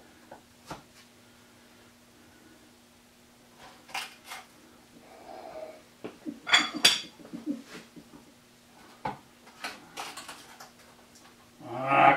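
Kitchen clatter of a spatula in a baking pan and ceramic plates being handled: scattered light knocks, with two sharp clinks about halfway through, over a faint steady hum.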